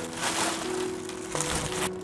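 Plastic bubble wrap and a plastic bag crinkling and rustling as they are handled, over faint background music.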